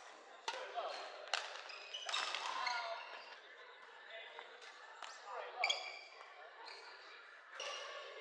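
Badminton rally on a wooden sports-hall floor: sharp racket strikes on the shuttlecock in the first couple of seconds, shoe squeaks as the players move, and a background of voices echoing around a large hall.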